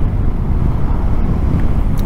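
BMW R 1250 GS boxer-twin engine running steadily while cruising at town speed, a steady low rumble mixed with wind buffeting the microphone.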